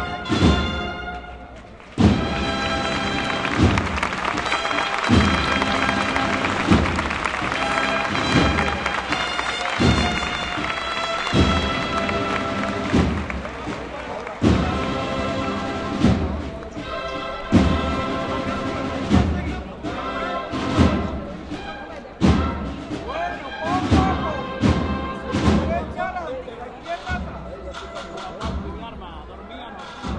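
A procession band playing a slow march: sustained brass chords over a heavy drum stroke about every second and a half.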